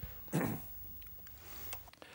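A brief, faint vocal sound from a man about a third of a second in, then quiet room tone.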